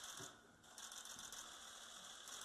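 Faint rapid clicking of press photographers' camera shutters firing in bursts, with a short break about half a second in.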